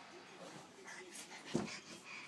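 Small dog whimpering softly, with one thump about a second and a half in.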